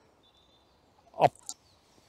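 Quiet woodland air with one faint, thin, high bird note near the start, then a single short spoken word about a second in.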